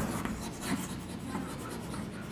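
Chalk scratching on a chalkboard as a line of words is written, soft and irregular.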